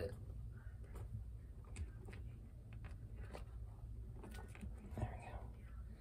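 Faint, scattered little clicks and smacks of a three-week-old baby squirrel suckling formula from a feeding syringe, with soft handling noise.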